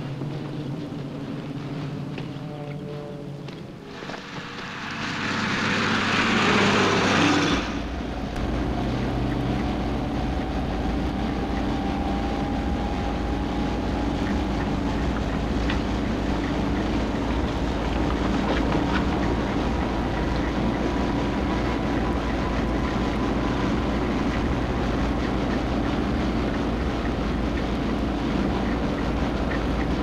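Steady low drone of a lorry engine heard from inside the back of the vehicle as it drives along a road, with a faint whine slowly rising in pitch. Before it, a loud rushing noise swells for a few seconds and cuts off abruptly about seven seconds in.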